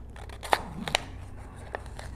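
A safety seal being picked and peeled off the mouth of a spice-rub shaker bottle by hand: three sharp clicks amid soft scraping.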